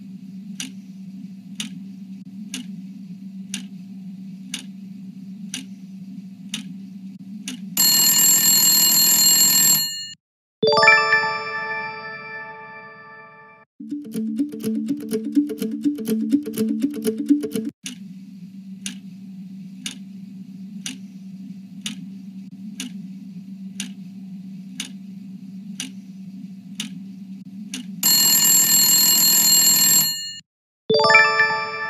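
Game-show quiz countdown sound effects: a clock-like tick about every two-thirds of a second over a steady low hum, cut off about eight seconds in by a loud time-up buzzer. A bell-like ding that rings out follows, then a short pulsing musical cue. The ticking countdown then starts again and ends in the same buzzer near the end.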